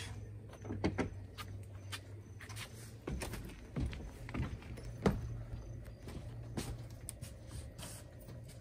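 Footfalls and knocks on an RV's fold-down entry steps and door as a person climbs in: about half a dozen irregular thumps and clicks over a faint low hum.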